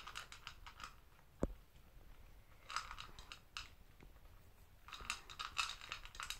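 Toy poodle chewing its dog food, not gulping it down whole: faint crackling chews in three short spells, near the start, around three seconds in and near the end. A single sharp click comes about a second and a half in.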